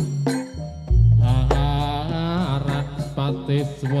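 Jaranan gamelan accompaniment playing loudly: a few sharp drum strikes at the start, a deep gong-like stroke about a second in that rings on, then a wavering chanted vocal line over the ensemble.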